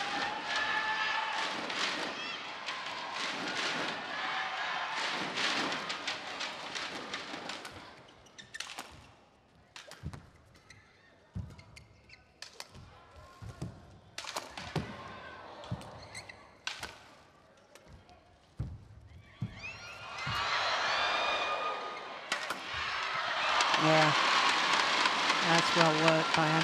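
Badminton arena crowd chattering. Then a rally with sharp racket hits on the shuttlecock spread over several seconds. From about twenty seconds in, the crowd cheers loudly as the point is won.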